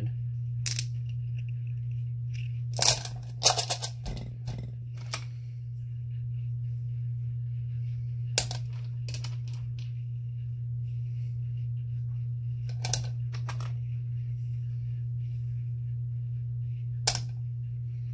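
Stones dropped one at a time into a rock tumbler barrel, each landing with a short sharp clack against the stones already inside, a few close together about three seconds in and the rest singly, over a steady low hum.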